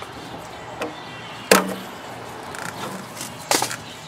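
Tools knocking against a scrap refrigerator's body while pulling copper tubing out of it: a sharp bang with a brief ring about a second and a half in, then a quick run of knocks near the end.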